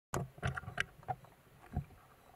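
Water sounds picked up underwater: a run of irregular short sloshes and knocks, several close together in the first second and one more near the end.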